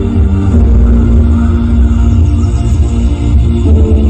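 Loud music played through a large carnival sound system (BP Audio), with heavy bass and long held notes.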